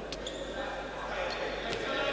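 Faint sports-hall ambience with a few soft knocks of a futsal ball being kicked and bouncing on the hard indoor court floor.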